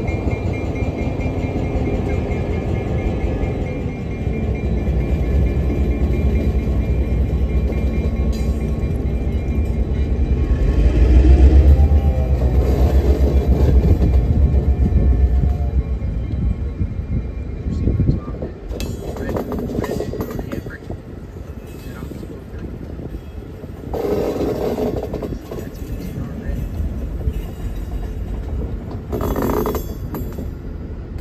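Passenger cars rolling past on the track behind a diesel locomotive: a low rumble of steel wheels, loudest about halfway through, then a few sharp clacks over the rail joints and short bursts of wheel noise as the last cars go by.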